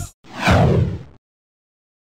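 A whoosh transition sound effect: one swoosh, falling in pitch, lasting about a second.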